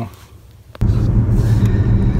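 Faint, low sound for a moment, then a click and, suddenly, a steady low rumble of road noise inside a car's cabin while it is being driven.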